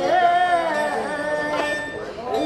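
Nanguan ensemble performing a song: a woman sings drawn-out notes that slide in pitch, over the dongxiao vertical flute and erxian bowed fiddle, with plucked pipa and sanxian.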